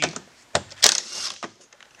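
A few separate sharp clicks and knocks of handling a cordless screw gun and plastic door-handle trim, the loudest just under a second in; the driver's motor is not running.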